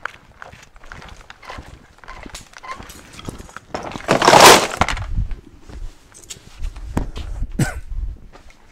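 Footsteps and scuffs on stone pavers, with a loud rattling crash about halfway through as a bundle of surplus automotive wiring harness is dumped into a plastic storage bin.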